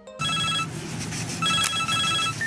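Mobile phone ringing with an electronic ringtone, two short bursts of high beeping tones with a pause between, over a low steady rumble.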